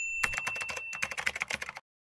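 Computer keyboard typing sound effect: a quick run of key clicks, about ten a second, lasting about a second and a half. A high steady beep sounds alongside it and stops about a second in.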